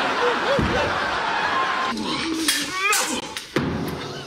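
Sitcom studio audience laughing, then about two seconds in the sound cuts abruptly to a run of sharp knocks and thumps from a fencing bout with foils.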